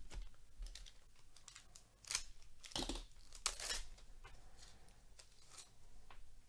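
Trading cards handled by gloved hands, the cards sliding and flicking against each other in a string of short dry rustles, loudest and most frequent about two to four seconds in.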